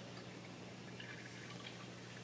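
Quiet room tone: a steady low hum, with a few faint light clicks about a second in.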